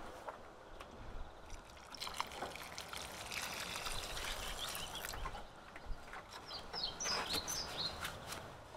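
Water trickling from a plastic watering can's spout onto loose soil in a seed furrow, a soft steady pour.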